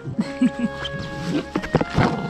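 Background music with several short dog vocalizations over it: a few brief arched whine-like calls in the first half second, and a louder burst of vocal sound near the end.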